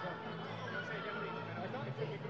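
Arena crowd chatter: many voices talking at once at a steady level, with no single voice standing out.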